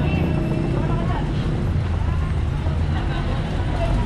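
Diesel dump truck engine idling with a steady low rumble, under the chatter of voices in a busy street.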